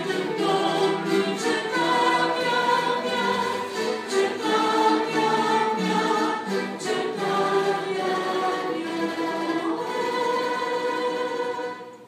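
A church orchestra with strings accompanying many voices singing a Romanian hymn in long held notes. The music breaks off just before the end.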